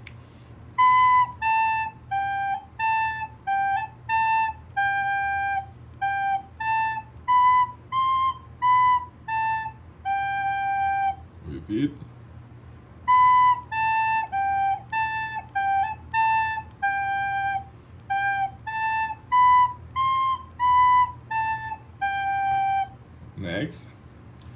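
Soprano recorder playing a simple tune of short, separate notes on G, A, B and C. The tune is played through twice, with a short break between the passes.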